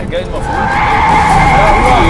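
Car tyres squealing in a long, steady screech as the car drifts, setting in about half a second in and growing louder.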